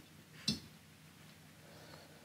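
A single light click about half a second in as the dial indicator's plunger is let go against the table saw blade; otherwise faint room tone.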